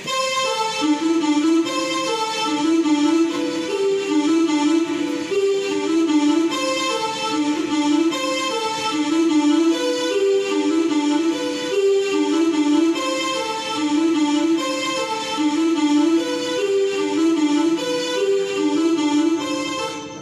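Yamaha portable keyboard playing a fast single-line solo in G major: quick runs of notes, with the same figure coming round again every couple of seconds.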